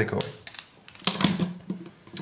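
Small objects handled on a tabletop: a sharp click just after the start, then a quick run of irregular light clicks and taps about a second in.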